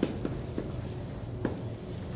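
Dry-erase marker writing on a whiteboard: a few short, separate strokes as letters are written.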